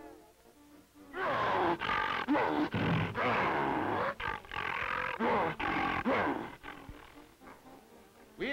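A cartoon lion roaring: a loud run of roars begins about a second in and lasts some five seconds, over background music.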